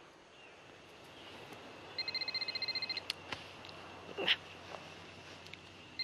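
A phone ringing: an electronic trilling ring about a second long, heard twice, the second near the end. A couple of sharp clicks fall between the rings.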